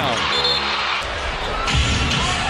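Arena crowd noise swelling after a slam dunk, with a held musical tone in the first second. After a sudden cut about a second in, a basketball is bounced on the hardwood court over arena hubbub.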